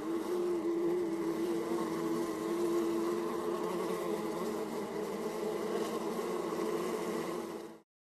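A steady buzzing drone with a slightly wavering pitch, like an insect's buzz, that cuts off suddenly near the end.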